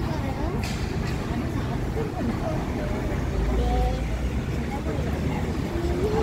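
City street traffic: vehicle engines and tyres making a steady low rumble, swelling for about a second around the middle as a heavy vehicle goes by, with faint voices of people nearby.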